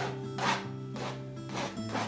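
Palette knife dashing paint onto a stretched canvas in about four short scraping strokes, roughly one every half second, over soft background music.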